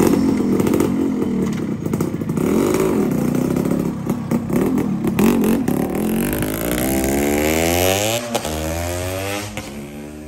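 Restored Yamaha RXZ two-stroke motorcycle engine revving with the throttle blipped, then pulling away and accelerating. Its pitch rises steadily, with a short break about eight seconds in as it shifts gear, and the sound fades near the end as the bike rides off.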